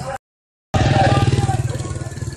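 After a brief dropout to dead silence near the start, a motorcycle engine runs close by with an even, rapid low pulse. Crowd voices can be heard behind it.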